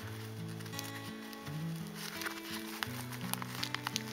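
Soft background music of low held notes that change every half second or so. Faint ticks and rustles of jute twine being picked loose from a brown-paper parcel come through, mostly in the second half.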